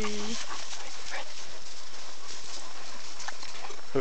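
Steady rushing of creek water, with a few faint scattered ticks.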